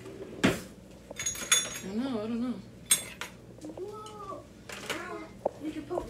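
Kitchen dishes and cutlery clattering, with a few sharp metallic clinks that ring briefly about one and a half and three seconds in.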